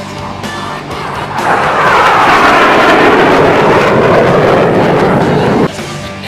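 MiG-21 jet fighter's engine during a low high-speed flyby: a loud jet noise that builds about a second and a half in, with a sweeping pitch as the jet passes, holds for about four seconds, then cuts off abruptly near the end. Faint background music sits under it at the start.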